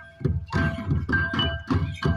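Folk drums beaten in a quick, uneven rhythm of about three to four strokes a second, starting after a brief lull, for Karam dancing. A steady high tone is held beneath them.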